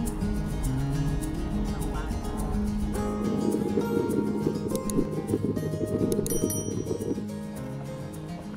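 Background music with a beat, easing down in level near the end.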